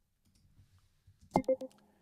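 Three quick sharp clicks about one and a half seconds in, from a computer key or mouse, with a brief faint tone among them.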